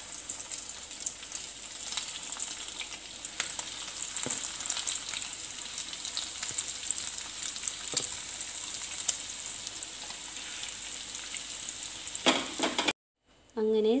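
Breadcrumb-coated jackfruit cutlets shallow-frying in oil in a pan: a steady sizzle with frequent small pops and crackles. It cuts off abruptly near the end.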